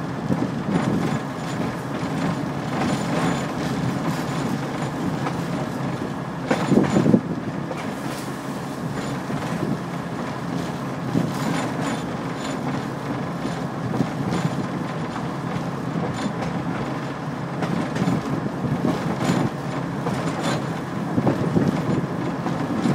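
Steel wheels of a rail car rolling along old jointed track: a steady rumble with occasional clacks, and a louder jolt about seven seconds in.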